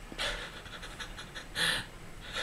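A man laughing under his breath: two breathy, voiceless bursts of exhaled laughter, the second one louder near the end.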